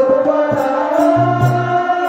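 Live stage music: a voice singing a long, wavering melodic line over held accompanying notes, with a drum struck about twice a second.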